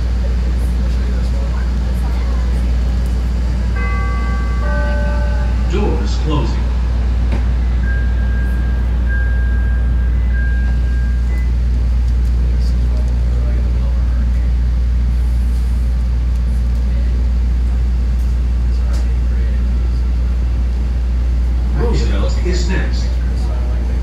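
Steady low hum of a CTA Red Line subway train standing at a station platform. About four seconds in, a short two-note electronic chime sounds.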